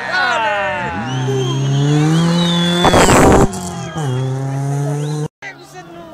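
Rally car engine going through a gravel corner: the note drops as it comes off the throttle, then climbs steadily as the car accelerates out. A short loud burst of noise comes about three seconds in, and the sound cuts out for a moment just after five seconds.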